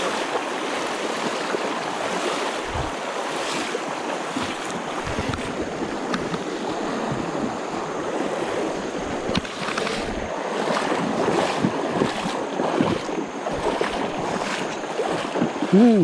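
Shallow river water rushing over stones, with the splashing of legs wading through the current; the splashes come more often in the second half.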